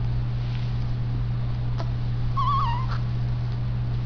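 A newborn baby's brief, wavering whimper a little past halfway, over a steady low hum.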